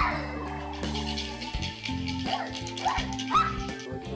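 A puppy barking a few short times over background music.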